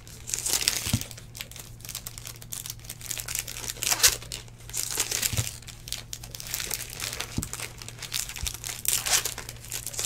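Trading cards and foil card-pack wrappers handled by hand: irregular bursts of foil crinkling and card rustling as stacks are shuffled and flicked through, with a few soft knocks. A steady low hum runs underneath.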